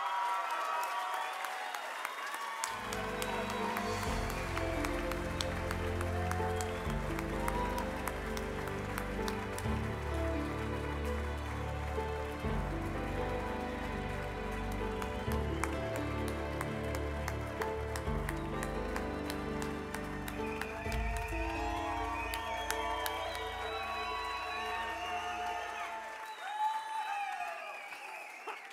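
Audience applause and cheers, joined about three seconds in by a music track with a heavy bass line, which drops out near the end while the clapping goes on.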